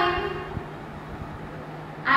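A woman's voice trails off at the start, then a faint steady low hum with a few soft clicks fills the pause.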